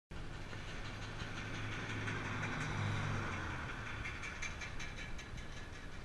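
A motor vehicle passing on the road, its engine hum and tyre noise swelling to a peak about three seconds in and then fading away. A few light clicks follow near the end.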